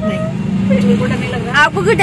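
Mostly a woman's voice, with short sounds early on and a word near the end, over the steady low drone of a car heard from inside the cabin.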